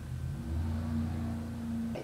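A low steady hum that swells about half a second in and cuts off abruptly at the end.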